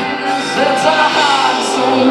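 A live band playing a song with a voice singing over it, amplified through the stage PA and heard from within the crowd.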